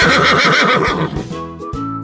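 A horse whinnying: one quavering call that falls in pitch and fades out about a second in, over light background music.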